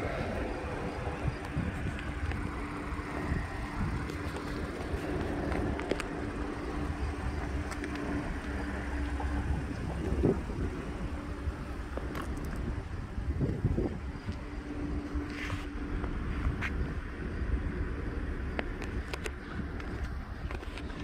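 Outdoor background noise with a low wind rumble on the microphone and a steady low hum that drops out for a few seconds midway, with a few faint knocks.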